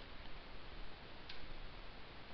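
Low steady microphone hiss with a single light click a little past a second in, as the formula is entered on the computer.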